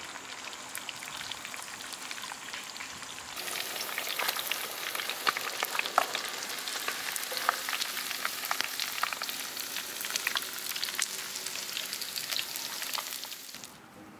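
Chicken pieces coated in crushed potato chips deep-frying in hot oil: a steady sizzle full of small crackles and pops. It grows louder a few seconds in and cuts off just before the end.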